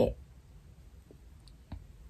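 Fingers with long nails untwisting two-strand twists in natural hair, giving a few faint clicks, the clearest near the end.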